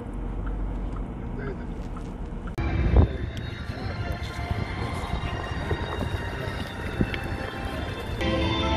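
Low, steady road rumble inside a moving car. About two and a half seconds in, it changes abruptly to open-air ambience with indistinct voices of people nearby and wind on the microphone. A sharp thump just after the change is the loudest sound.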